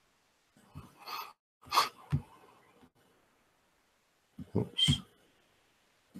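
Short bursts of breath or mouth noise close to a microphone, in three brief clusters about a second in, around two seconds and near the end, each a quick hiss with a low thump.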